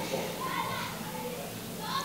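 Faint background voices of children playing, heard as short, higher-pitched snatches under the quiet of the pause.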